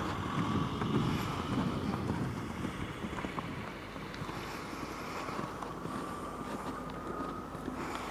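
Wind buffeting the microphone: a steady, noisy rumble that is strongest in the first couple of seconds and eases after about three seconds.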